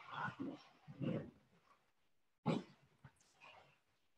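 A dog making a few short, soft vocal sounds, three separate ones in the first three seconds.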